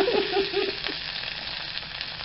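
Julienned bell peppers just tipped into hot oil in a wok, sizzling steadily. A man laughs over the first second.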